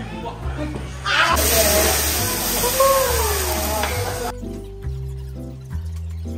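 Background music with a steady beat over diners' voices; about a second in, a loud even sizzling hiss from the hot teppanyaki plate starts, then cuts off abruptly about four seconds in, leaving only the music.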